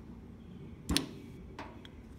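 A single sharp click just under a second in, followed by two faint ticks, from an aluminium carburetor body and its small parts being handled.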